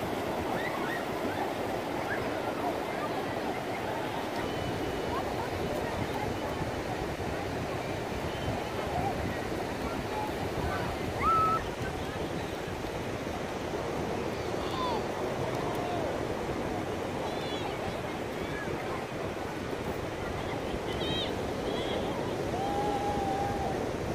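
Ocean surf washing steadily onto the beach, with faint distant voices and calls of many people in the water scattered through it.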